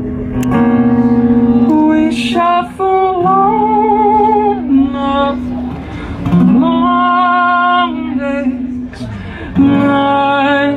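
A man singing long held notes with a slight waver over a strummed acoustic guitar, played live and amplified.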